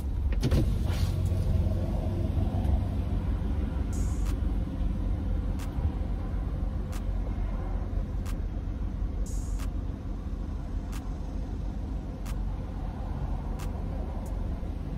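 Vehicle idling, heard from inside the cabin as a steady low rumble. Faint ticks come roughly every second and a half.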